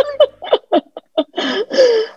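Laughter: a quick string of short bursts, then a couple of longer ones near the end.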